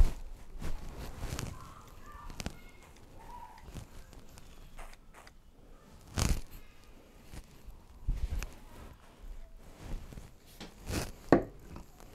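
Afro Sheen Glow Up hair shine spray squirted onto hair in a few short, sharp bursts that shoot out rather than misting like an aerosol, with soft handling noise of hands in hair and on a towel in between.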